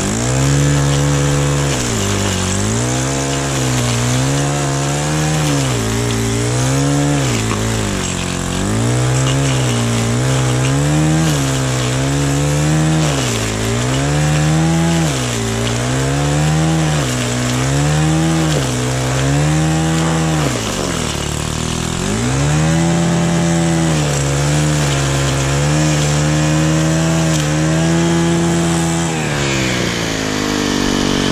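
Gas-powered stick edger running, its engine pitch rising and falling every second or two as the blade cuts an edging trench through turf and soil. The revs dip deeper about two-thirds of the way through and drop toward idle at the very end.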